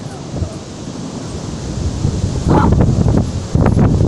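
Wind buffeting the phone's microphone in steady noise, gusting to a heavy rumble in the second half.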